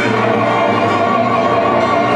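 Male operatic soloist singing held notes with a wide vibrato over a full symphony orchestra and mixed choir.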